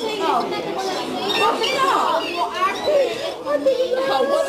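Overlapping voices: people at a table talking over the chatter of a busy dining room.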